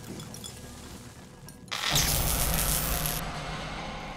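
A sudden loud crash of shattering glass with a deep rumble under it, a little under two seconds in, ringing on and dying away over the next two seconds.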